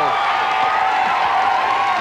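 Studio audience applauding and cheering as a guest comes on.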